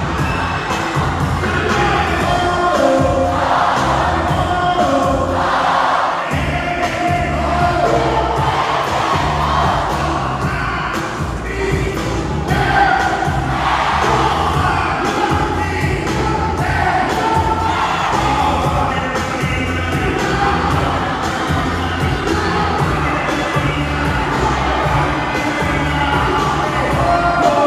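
Live concert music through a loud PA, with a steady bass beat and vocals, over a large crowd cheering and singing along.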